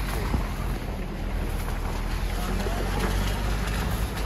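A vehicle driving: a steady low rumble of engine and road noise, with wind blowing on the microphone.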